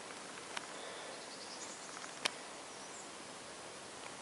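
Quiet outdoor background: a steady faint hiss with two sharp little clicks about a second and a half apart, and faint high chirps between them.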